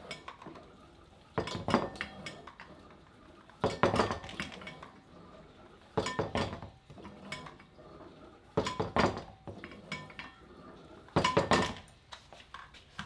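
Metal clinking and clanking from a vector wrench cable-and-pulley rig as the weight is lifted and lowered on each rep: five separate bursts of clinks, about every two and a half seconds.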